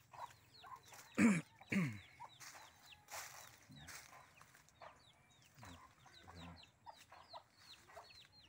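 Chickens clucking, with two loud calls falling in pitch about a second in, over a steady run of short, high, falling cheeps.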